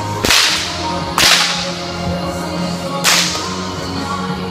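Three sharp cracks of a 6-foot bullwhip: one just after the start, one about a second in, and one about three seconds in, each with a short ring of echo.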